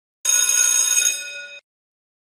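Bell-ring sound effect for tapping a notification bell icon: a bright, many-toned ring lasting about a second and a half that fades slightly, then cuts off abruptly.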